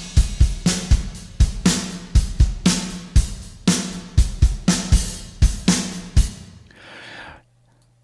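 Recorded drum kit played back through a mix, kick, snare, hi-hat and cymbals in a steady groove, with a room/plate-style reverb (Analog Obsession Room041) pushed up on the overheads and snare so it rings out plainly, sounding dirty. The playback stops about six seconds in and the reverb tail fades away.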